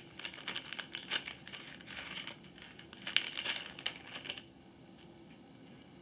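Clear plastic packet crinkling as small stencil sheets are handled and pulled out of it, with irregular crackles that die away about four seconds in.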